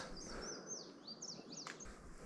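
Faint bird song: a string of high whistled notes that slide up and down, one after another.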